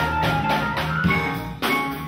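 Live funk band playing: drum kit keeping a steady beat under electric bass and electric guitar, with a brief drop and a hard accent about a second and a half in.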